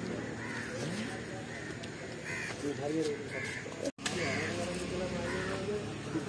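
Crows cawing several times, roughly a second apart, over a murmur of voices.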